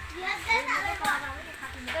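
Children's high-pitched voices talking and calling out, in two short stretches.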